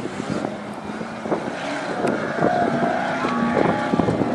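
Off-road race truck's engine running hard as it climbs a dirt hill. Its steady note wavers slightly in pitch and grows a little louder.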